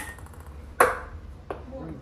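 Ping pong ball hitting a dinner plate and bouncing: sharp clicks with a short ring, one at the start, the loudest about a second in, and a softer one shortly after.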